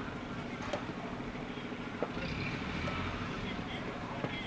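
Open-air ambience on a cricket ground: distant, indistinct voices of players over a steady low background rumble, with a couple of faint knocks.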